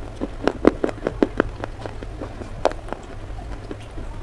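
Close-up crunching of baked slate clay being chewed: a quick run of sharp crunches in the first second and a half, then fewer and farther apart.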